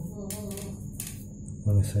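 Mostly speech: a faint voice in the first second, then a man speaking Indonesian just before the end, with a few sharp handling clicks in between.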